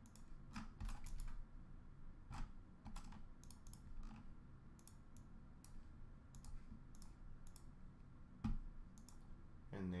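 Faint, irregular clicking of a computer mouse and keyboard, a few clicks at a time with short gaps, sometimes several in quick succession.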